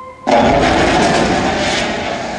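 Film soundtrack effect of an erupting volcano: a sudden loud rush of rumbling noise starts about a quarter second in and holds steady, cutting off a soft held music tone.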